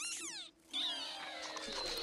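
Cartoon animal squeaking from an animated film's soundtrack: a quick squeak falling in pitch, then after a short break a longer, steadier squeal.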